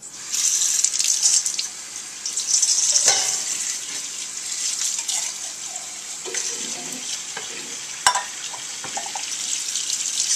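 Kitchen tap running, the stream splashing onto a tin can and into a stainless-steel colander in the sink. The water comes on just after the start, with a sharp knock about eight seconds in.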